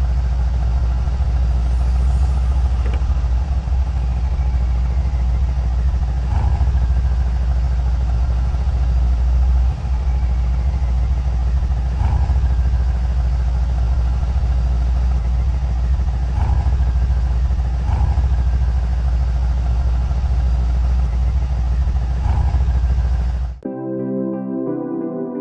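A car's engine and road noise, a steady low rumble that runs on with no words and cuts off suddenly near the end.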